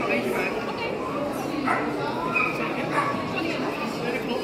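Dogs yipping and barking in short bursts over a steady hum of crowd chatter.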